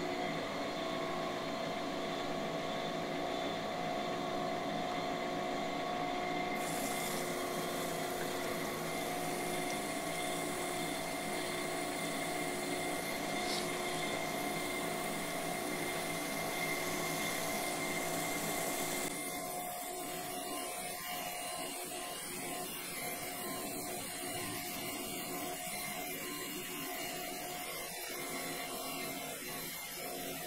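Camshaft grinder running steadily with a mix of motor hum tones while its grinding wheel finishes a main bearing journal of a Viper V10 camshaft under flowing coolant. A hiss joins about six seconds in, and about two-thirds of the way through the sound drops a little and loses its hiss.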